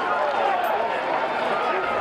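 Several people's voices calling and chattering over one another, none of them clear enough to make out words.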